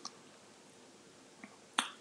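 Quiet room tone in a pause between speech, with a couple of small clicks; the sharpest comes near the end, just before talking resumes.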